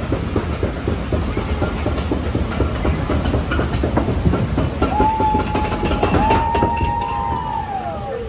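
Rapid, steady clacking from a boat-ride conveyor lift as the boat is carried along. About halfway through, two held whistle-like tones sound, the second one falling in pitch near the end.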